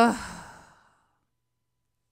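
A woman's voiced sigh, falling in pitch and trailing off into breath within the first second.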